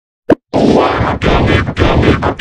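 Dead silence broken by one short pop about a third of a second in, then loud, heavily distorted and clipped effects-processed audio cuts in about half a second in and keeps going.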